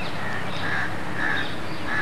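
A bird calling: about four short calls, evenly spaced about half a second apart.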